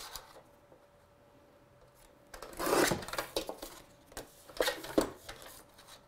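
Sliding-blade paper trimmer cutting a strip off a sheet of card: one cutting stroke of just under a second about two and a half seconds in, followed by a few short knocks as the card and trimmer are handled.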